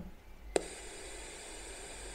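A single click about half a second in as the lead makes contact, then faint steady hiss of static from a small portable radio's output fed straight into a passive PC speaker, unamplified.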